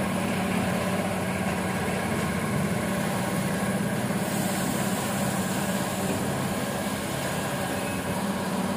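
Steady low machine hum with no change or sudden sounds.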